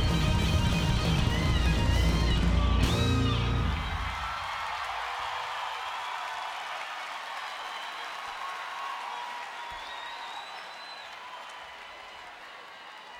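Live band music with a heavy bass plays until about four seconds in, when it cuts out. The concert audience's cheering and screaming carries on after it, fading slowly.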